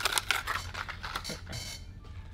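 Plastic blister-packed fishing lures being handled: a run of light clicks and taps, with a short rustle of packaging near the end.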